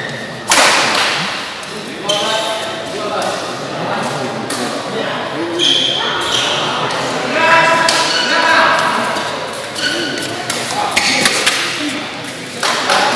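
Badminton doubles rally on an indoor court: repeated sharp racket strikes on the shuttlecock, short high shoe squeaks on the court mat, and voices of players and onlookers in a large hall.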